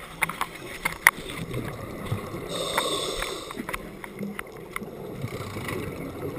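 Scuba regulator breathing underwater. About two and a half seconds in, a single rush of air and bubbles lasts about a second, part of a breathing rhythm of roughly one breath every four seconds. Scattered sharp clicks, mostly in the first second, and faint bubbling fill the gaps.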